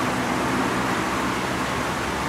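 Steady outdoor background noise, an even hiss-like rumble with no distinct events.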